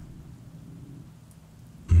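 Faint, steady low rumble of background ambience.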